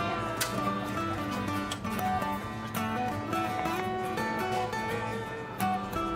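Instrumental background music with plucked string notes, likely guitar, played in a quick, even pattern.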